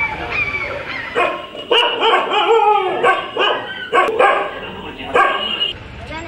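Dog barking repeatedly in a quick run of loud barks and yelps, starting about a second in and stopping shortly before the end.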